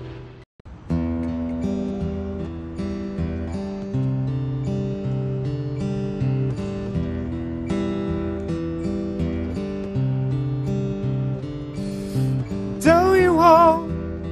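Acoustic guitar strumming chords, starting after a brief gap in the sound just under a second in. A man's voice starts singing near the end.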